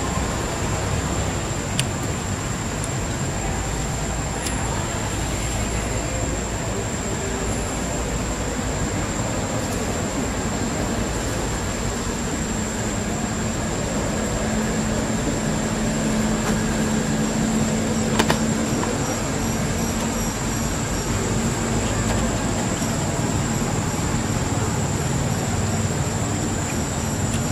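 Steady outdoor background noise with a continuous high, thin whine throughout. A low hum rises for about ten seconds in the middle, and there is a single sharp click shortly after.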